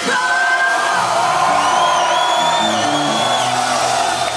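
Live rock band playing in a concert hall, with the crowd whooping and yelling over it. Long held notes sit in the middle, a low line steps from note to note beneath, and higher wavering tones ride on top.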